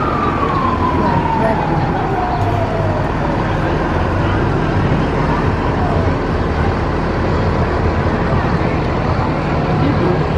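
A single siren tone that slides down in pitch and fades out over the first three seconds, like a siren winding down. Behind it is a steady din of street and crowd noise with a low engine hum.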